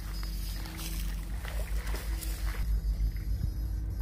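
Steady electrical hum from a backpack electrofishing unit in use, under a low, fluctuating rumble that grows stronger after the first second or so.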